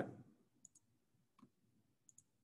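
Faint computer mouse clicks against near silence: a quick pair of clicks a little over half a second in, then a single click about a second and a half in.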